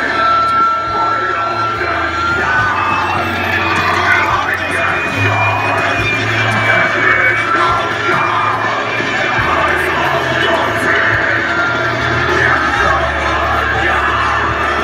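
Amplified worship music from a sound system, with a large outdoor crowd singing, cheering and shouting along. A steady bass line runs underneath, and a long held high note sounds in the first few seconds.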